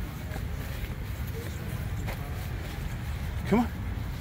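Steady low rumble, typical of wind and handling on a handheld microphone during an outdoor walk, with one short rising voice-like call about three and a half seconds in.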